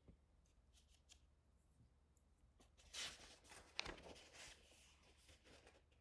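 Faint rustle of a picture book's paper page being turned by hand, about three to four seconds in, with one sharp little snap of the page near the end of the turn.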